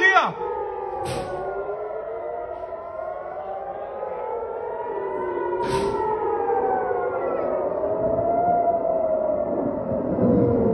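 Several civil-defense air-raid sirens wailing at once, their slow rising and falling tones overlapping out of step: a rocket-attack alert sounding across the city.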